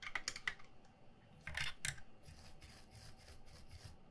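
Light clicks and rattles of hand soldering tools being handled on a bench. A quick cluster of clicks comes first, then a louder rattle about a second and a half in, then a run of faint, quick, typing-like clicks.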